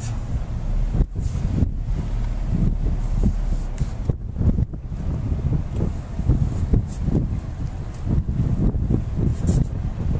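Wind buffeting the camera's microphone: an uneven, gusting low rumble that rises and falls irregularly.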